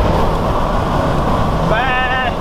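Steady road and engine noise inside a moving campervan's cabin. Near the end, a man calls out a drawn-out "baa" imitating a sheep.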